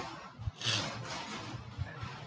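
Faint, muffled noise of a motorcycle going by on a paved street, the kind that sells cooking gas door to door.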